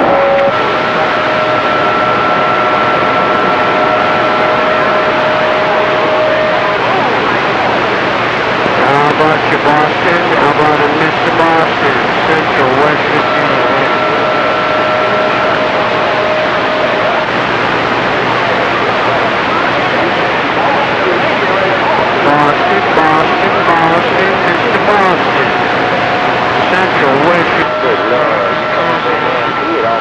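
Widebanded Cobra 2000 base-station CB radio receiving skip on channel 28: loud static hiss with faint, garbled overlapping voices of distant stations. Steady whistling tones from clashing carriers come and go.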